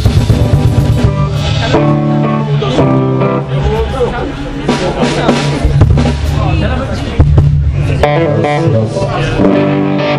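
A live band playing, with guitar, bass and a drum kit.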